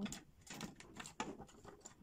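Key turning in the override lock of a small steel digital safe and the door knob being worked: a run of small metallic clicks and rattles.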